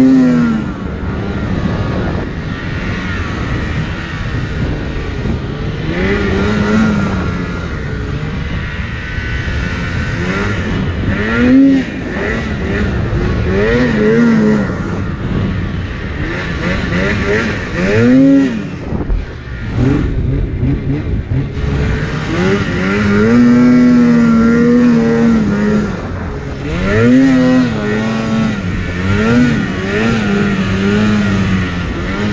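2016 Polaris RMK Axys 800 two-stroke twin snowmobile engine, revved up and down again and again as the sled is ridden through snow. The longest steady pull comes about two-thirds of the way in, after a brief drop off the throttle.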